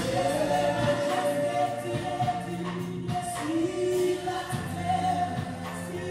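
A small worship team singing a gospel song into microphones, with electronic keyboard accompaniment, heard through the church's PA. The sung notes are held and slide between pitches over a steady low keyboard note.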